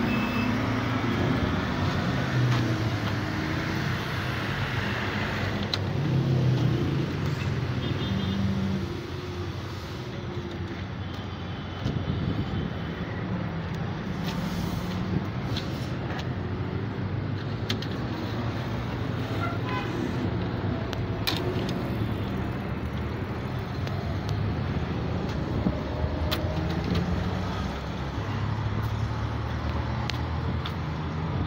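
Street traffic: vehicle engines running with a low hum, with a few short high beeps about eight and thirteen seconds in, and scattered clicks.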